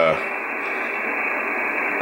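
Steady static hiss from the Afedri SDR receiver's audio, with no station voice coming through. The hiss is narrow and muffled, with no highs, as if passed through the receiver's voice filter.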